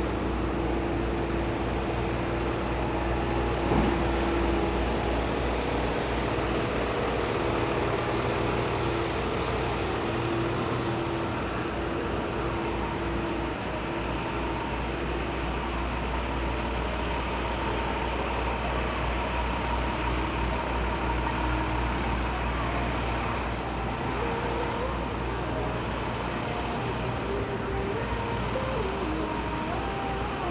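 Street traffic ambience: a steady low rumble of idling trucks and passing road vehicles, with an engine hum that drops away about a third of the way in.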